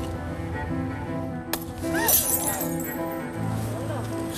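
A glass light bulb pops and shatters about a second and a half in, followed by brief cries from onlookers, over background music.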